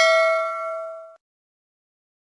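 Notification-bell 'ding' sound effect of a subscribe animation: a struck chime with several pitches ringing together, fading, then cut off abruptly about a second in.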